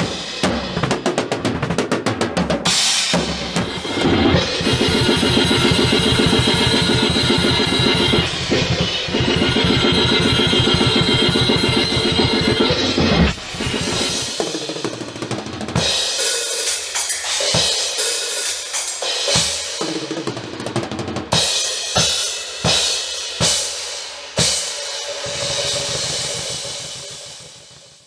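Drum kit played fast in a metal style: a dense run of very rapid bass-drum and snare hits for about ten seconds, then sparser, broken-up playing in short stretches, fading out near the end.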